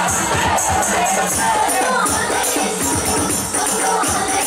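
Rebana ensemble playing: hand-struck frame drums beat a steady, driving rhythm of deep strokes, several a second, under two women singing into microphones.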